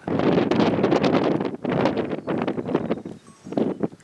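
Gusty wind blowing across the microphone in irregular swells, easing briefly about three seconds in.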